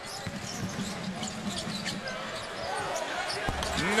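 Arena crowd noise with a basketball being dribbled on a hardwood court. A low thump comes about three and a half seconds in.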